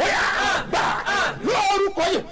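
A man's voice, loud and emphatic, calling out in a raised, declaiming tone.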